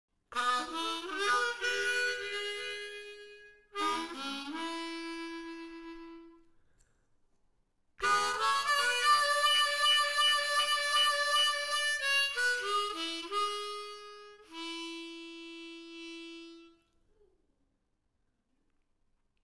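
Solo harmonica playing a tune in three phrases, with a rising slide into a held note about four seconds in and a pause of about a second and a half before the last phrase; it ends on a long held note that fades away.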